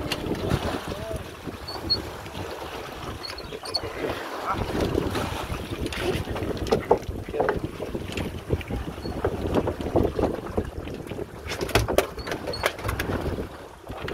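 Wind buffeting the phone's microphone over the sea's wash beside a small fishing boat, with scattered knocks and bumps on deck as a gaffed rockcod is handled at the rail, a cluster of sharper knocks near the end.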